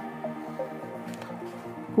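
Quiet background music with soft, held notes during a pause in the narration.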